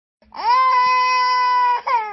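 A toddler holding one long, steady crying note for about a second and a half, then breaking off into a short cry that falls in pitch.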